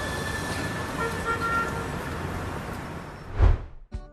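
Street traffic noise with a short car horn toot about a second in. The noise fades and ends in a brief low thump just before the end.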